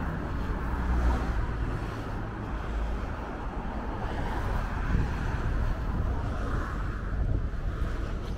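City street traffic noise: a steady wash of car sound with a low rumble.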